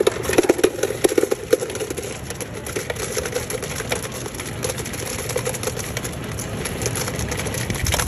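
Soda fountain ice dispenser running: a steady rattle of ice cubes tumbling into a paper cup over the whir of the dispenser's motor.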